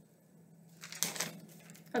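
A short burst of rustling about a second in, with a fainter one just after, in a quiet small room; a woman's voice starts right at the end.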